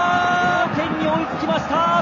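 A Japanese TV football commentator calling a goal: a long, held excited shout that breaks off about half a second in, followed by more speech.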